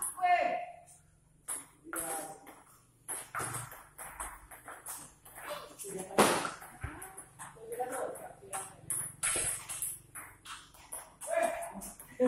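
Table tennis rally: the ball clicking off rubber paddles and bouncing on the table in quick, irregular knocks, with one especially loud hit about six seconds in.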